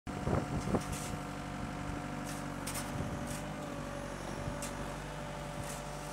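Wheeled excavator's diesel engine running steadily. Two loud knocks come in the first second, then light sharp clinks every second or so from the arm and bucket working.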